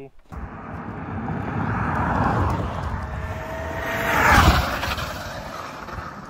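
A Tesla car with an electric dirt bike close behind it passing close by at speed. Tyre and wind noise builds to a peak about four and a half seconds in, with a faint thin whine, then fades as they move off.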